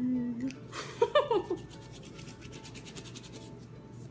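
Muffled voice from a mouth stuffed with marshmallows: a short closed-mouth hum, then a breathy rush and a few quick falling sounds about a second in.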